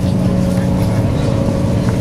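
SeaBus passenger ferry's engines running, a steady low drone with several held tones and a few faint clicks, heard aboard the vessel.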